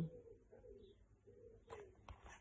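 A bird cooing faintly over quiet room tone. A soft rustle comes near the end.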